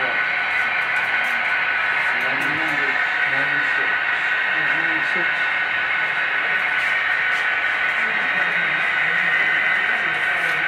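Indistinct, untranscribed talk of several people in a room over a steady hiss.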